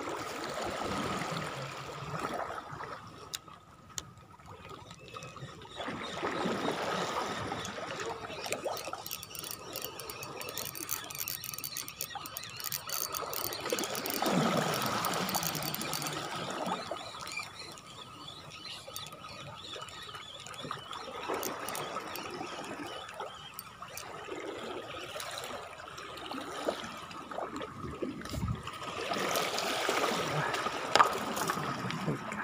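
Small waves washing on a pebble shore, mixed with wind buffeting and rubbing on a handheld phone microphone. The noise swells and fades every few seconds, over a faint steady high whine.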